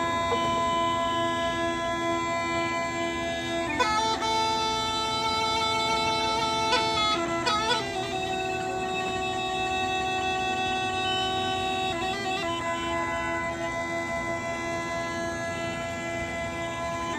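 Bulgarian gaida (bagpipe) playing a slow melody of long held notes over a steady drone, the melody note changing every few seconds.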